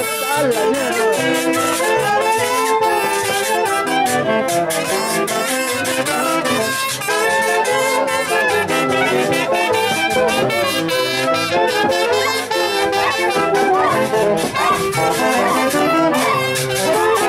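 Band of brass and saxophones playing dance music over a steady beat.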